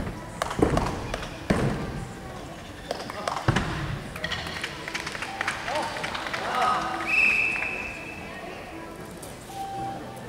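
A gymnast's landings on a sprung floor-exercise floor: a few hard thumps in the first few seconds, the first about half a second in. Voices and music carry across the sports hall in the background, with a whistle-like tone about seven seconds in.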